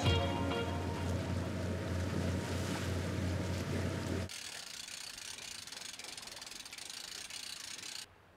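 Outboard motor driving a small jon boat at speed: a steady low engine hum under the rush of water and wind. About four seconds in it cuts off abruptly to a quieter, even hiss.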